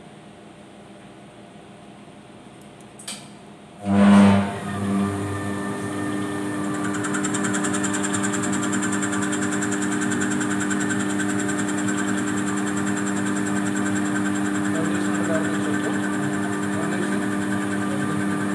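Hytech CNC lathe starting its cycle: after a small click, the machine comes on suddenly about four seconds in with a brief loud surge, then settles into a steady running hum with several held tones and a rising hiss above them.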